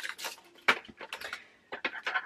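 Sharp clicks and taps of small clear plastic storage pots being handled and fitted together on a table, with a light rustle of packaging; the loudest click comes about two-thirds of a second in, and a quick pair near the end.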